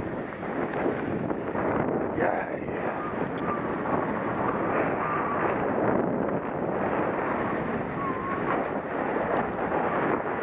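Steady wind noise on an action camera's microphone during a downhill ski run, mixed with the skis running over packed snow.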